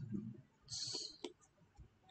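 Faint scratch of a pen stylus writing on a digital writing tablet, then a single sharp click of the nib about a second and a quarter in.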